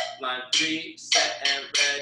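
A drum struck with sticks in an uneven rhythm of single ringing strokes, about five in two seconds, as a drum-reading exercise of sixteenth-note check patterns is played.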